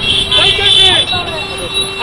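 Raised, shouting men's voices over street traffic noise, with a steady held tone running underneath for more than a second.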